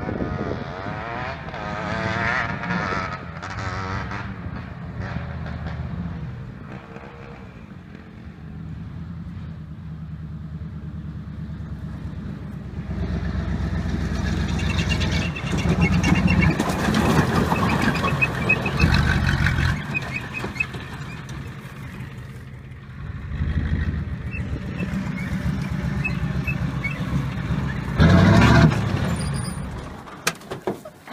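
Ford F-250's 7.3 IDI diesel V8 revving hard and falling back as the truck slides and spins its tyres on dirt and grass. The engine swells louder about halfway through and again in the last few seconds, with a loud peak near the end as the truck passes close.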